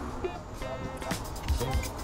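Background music: short synth-like notes over a steady pulsing bass beat.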